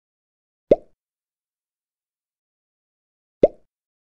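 Two short pop sound effects from an animated logo intro, about 2.7 seconds apart, each a quick upward blip.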